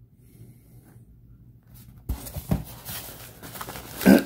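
Cardboard shipping box being opened by hand: after about two seconds of quiet, the flaps and the newspaper and bubble-wrap packing inside rustle and crinkle, with a couple of sharp knocks.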